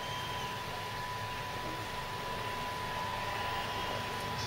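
A bus going past on the street outside, a steady low rumble and hiss heard through the pub's window glass and growing slightly louder near the end, with a faint steady tone running under it.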